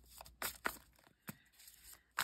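Faint handling noise: a handful of short rustles and clicks spread across two seconds.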